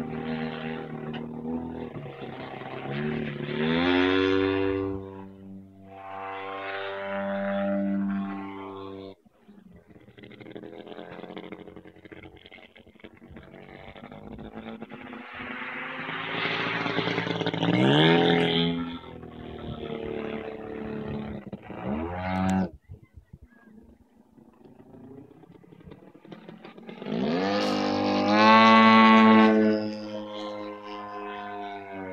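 Radio-controlled Yak-54 aerobatic model plane's engine and propeller in flight, the pitch rising and falling over and over as the throttle opens and closes through manoeuvres. It cuts back sharply twice, about nine seconds in and again past the twenty-second mark, and is loudest near the end.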